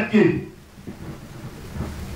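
A man's voice through a handheld microphone breaks off about half a second in, leaving a steady hiss and a low rumble that grows toward the end.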